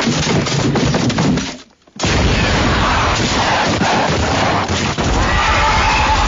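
Cartoon sound effects: a run of knocks and thuds, then, from about two seconds in, a giant movie monster roaring over gunfire and explosions from tanks and soldiers.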